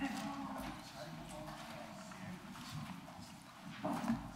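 Background murmur of several people talking in a meeting room, with scattered knocks, clatter and footsteps as people move about and settle. A louder knock comes near the end.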